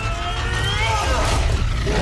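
Strained shouts from the robot's pilots, their pitch bending up and down, over a dense, deep rumble of heavy machinery and fight effects.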